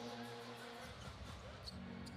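Faint NBA TV broadcast audio: a basketball dribbled on a hardwood court under a low wash of arena crowd noise.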